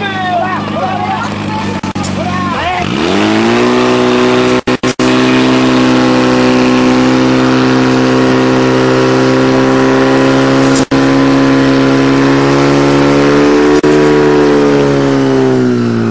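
Engine of a portable fire pump running, revved up sharply about three seconds in and then held at full throttle to pump water, its pitch dipping a little near the end. Shouting voices can be heard over the lower engine note at the start.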